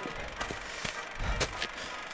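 Footsteps of a person running through dry grass: a few irregular soft thuds and rustles.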